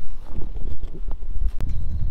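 Footsteps and a couple of sharp knocks, about a second and a second and a half in, over a steady low rumble.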